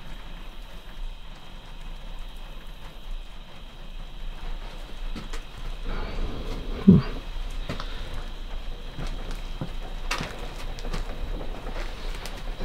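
Footsteps with scattered small knocks and clicks on a debris-covered wooden floor, over a steady background hiss, with a brief murmured "hmm" about seven seconds in.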